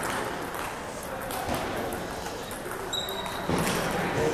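Many voices chattering and echoing in a large gymnasium, with a few sharp clicks of a table tennis ball on bat and table.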